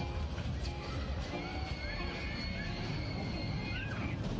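Children shrieking and squealing on a small kiddie roller coaster: several short high squeals, then one long held scream lasting about two seconds that drops in pitch at the end, over fairground music and a low rumble.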